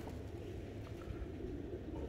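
Faint, steady cooing of domestic pigeons.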